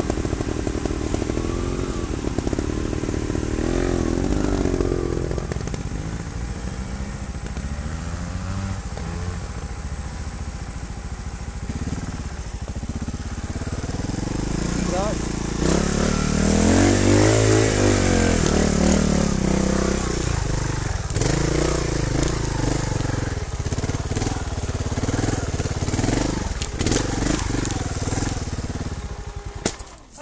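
Trials motorcycle engine working up a steep trail, its note rising and falling with the throttle and revving hardest about halfway through. It cuts out abruptly at the very end as the bike stalls.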